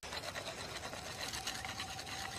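Campfire crackling, with many quick irregular pops and snaps over a steady hiss and a faint steady tone held underneath.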